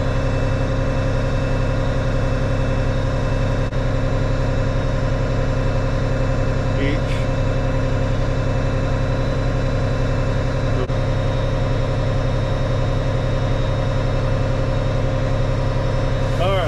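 Case IH tractor engine idling steadily, heard from inside the cab as a constant low hum.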